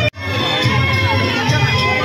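Dense festival crowd: many people talking and calling out at once, with music playing underneath. It comes in after a momentary drop-out at the very start.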